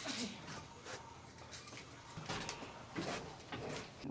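Faint, scattered light knocks and clicks of clear plastic storage totes being handled and set in place.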